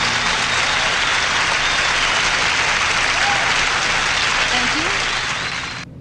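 Concert audience applauding as a live song ends, with a few scattered shouts over the steady clapping. The applause cuts off abruptly near the end.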